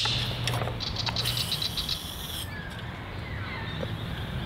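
A quick run of clicks running into a rasping hiss for about a second and a half, from a small black canister handled at the table, with birds giving short falling chirps in the background.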